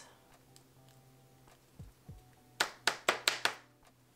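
A sheet of watercolour paper being handled and shaken to run the wet paint: a couple of soft thumps, then five quick sharp taps in about a second in the second half.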